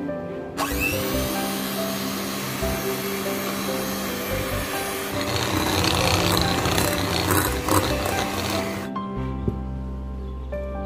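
Electric hand mixer running, its wire beaters churning cream cheese in a glass bowl. The motor starts about half a second in with a brief rising whine and switches off about a second before the end, over background music.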